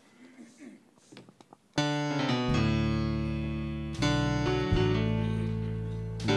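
Keyboard playing a slow hymn introduction: after a nearly quiet start, a held chord sounds about two seconds in and another about four seconds in, each sustained and slowly fading.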